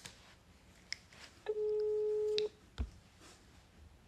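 Telephone ringback tone of an outgoing call played through a phone's speaker: one steady beep about a second long, meaning the number is ringing and has not yet been answered. A couple of faint clicks come before and after it.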